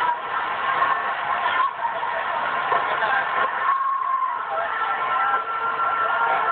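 Several people's voices shouting and calling out together, with some long wavering cries, heard thin through a TV's speaker.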